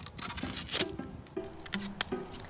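Plastic label crinkling and rustling as it is peeled off a Coke bottle, loudest a little under a second in, over light background music.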